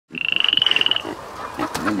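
A frog-like trilled call, a high tone pulsing very fast (over twenty pulses a second), lasting just under a second at the start. A voice starts singing near the end.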